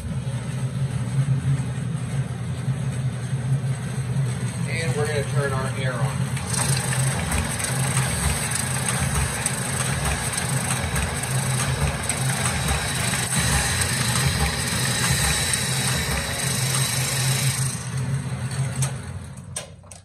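Rollem air-vacuum-fed perforating and numbering machine switched on and running, with its vacuum pump and rollers giving a steady hum. From about six seconds in, sheets feed through with a regular beat of about two a second and a hiss of air. Near the end the machine cuts off.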